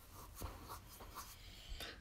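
Faint rustling and scratchy handling noise over a low steady hum, with a soft tap about half a second in and another near the end.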